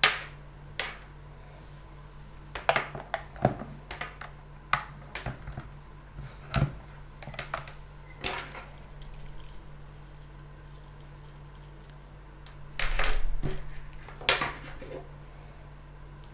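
Cables and plugs being handled and pushed into the jacks of a Zoom U-24 audio interface on a wooden desk: a scattered run of clicks and knocks. Near the end comes a scrape of about a second, then one sharp knock.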